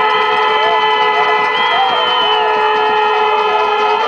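Several horns sounding long, steady notes at different pitches at the same time, held for about four seconds, with a few wavering voices or whistles over them.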